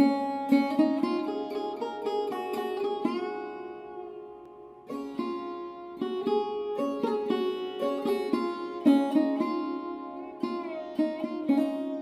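Background music: a solo sitar plucking a melody over steady drone strings, with notes bent up and down. The phrase dies away about four seconds in, and a new one starts about a second later.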